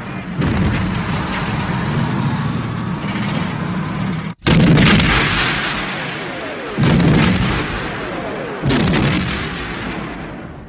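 Battle sound of gunfire and artillery, a dense unbroken din of many shots. It cuts off suddenly about four seconds in, then three heavy blasts follow roughly two seconds apart, each dying away.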